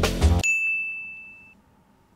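Background music with a beat cuts off about half a second in, and a single clear, high bell-like ding rings out for about a second and fades away.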